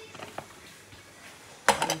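A few light clicks as a lid is fitted onto a moin moin container, then a sharp clatter near the end as the container is set into the cooking pot.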